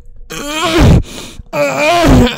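A person's voice making two drawn-out wordless vocal sounds, the pitch sliding up and down, the second starting about halfway through.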